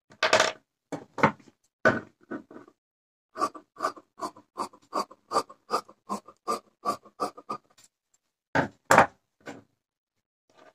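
Tailor's scissors snipping through blouse cloth, a few uneven snips and handling noises at first, then a steady run of cuts about three a second that stops at about seven and a half seconds. Near the end come two louder knocks.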